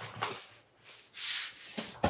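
Black plastic and bubble wrap rustling and crinkling as it is handled in a cardboard box, with a longer, louder crinkle about a second in.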